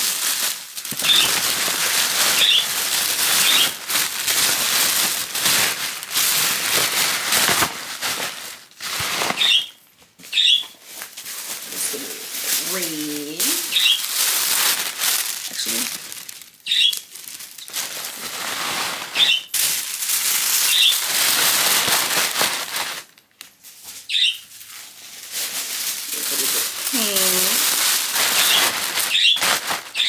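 Tissue paper rustling and crinkling as sheets are pulled apart, shaken out and stuffed into a paper gift bag. It comes in long bursts with a few brief pauses.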